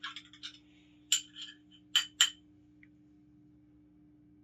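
A spoon stirring in a glass of water and clinking against the glass. A few light clicks come at first, then three sharp, ringing clinks: one about a second in and two close together near the two-second mark.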